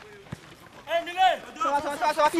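Men's voices shouting and calling out loudly from about a second in, preceded by a single sharp knock.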